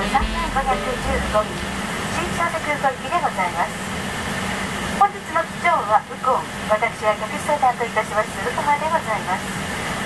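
Voices talking inside a parked airliner's cabin over a steady low hum.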